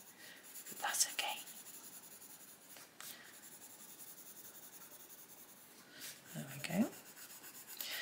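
Derwent Lightfast coloured pencil shading lightly on a colouring-book page, a faint scratchy rubbing. Soft murmurs come about a second in and again near the end, and a single light click about three seconds in.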